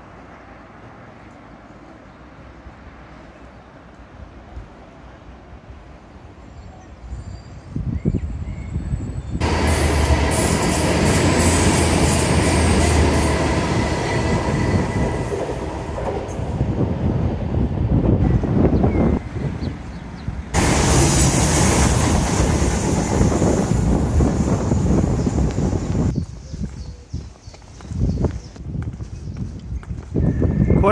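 A Great Western Railway Hitachi Intercity Express Train passing close by on diesel power: its rumble builds out of quiet street ambience about eight seconds in and stays loud, with a deep low hum, for most of the rest before dropping away near the end. The sound cuts in and changes abruptly twice.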